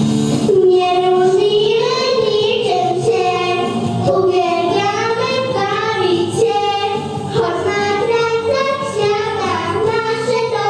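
Two young girls singing a song as a vocal duet into handheld microphones, over instrumental accompaniment.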